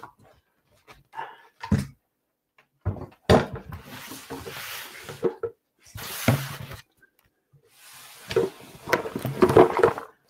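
Handling noise as a camera or phone is moved and repositioned: irregular rustles and knocks in several separate bursts, the longest near the end.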